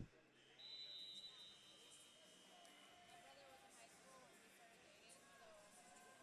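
Near silence: faint arena room tone with distant voices. A faint steady high tone runs for about three seconds near the start.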